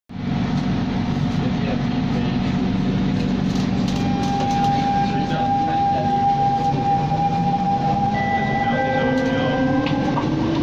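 Metro train running, heard from inside the carriage at the doors: a steady rumble and motor hum with a high steady whine, and near the end a second whine that starts rising in pitch.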